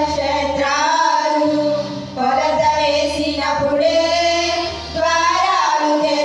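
Women singing a Telugu Christian hymn together through microphones, with long held notes and short breaths about two seconds in and again near the end, over a low sustained accompaniment.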